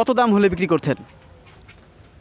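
A man speaking for about the first second, then only faint background noise.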